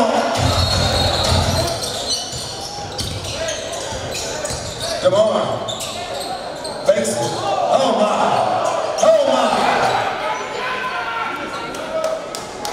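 Live basketball game sound in a gym: a crowd of voices and shouts, with a few sharp knocks of the ball bouncing on the hardwood court.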